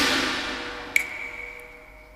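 Cantonese opera accompaniment dying away after a loud struck chord just before, its ringing tail fading steadily. About a second in, a single high, ringing strike of a small percussion instrument sounds once and fades slowly.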